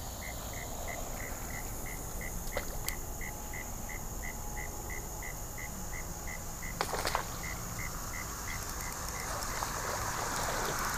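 A cricket chirping steadily at about four chirps a second, stopping near the end. A few sharp clicks come over it, a cluster of them about seven seconds in.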